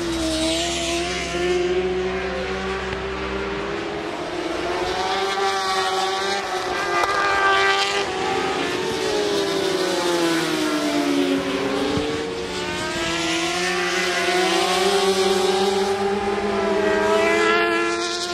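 Several racing motorcycles' engines at high revs as the bikes pass in a group, their pitches climbing and dropping with the throttle and gear changes. There is a clear falling sweep about two-thirds of the way through.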